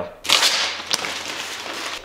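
A sudden whoosh of hissing noise about a quarter second in, fading slowly into a steady hiss, with a single sharp click about a second in.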